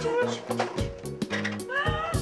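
Background dance music with a steady beat and bass line, with women's high-pitched excited shrieks near the end.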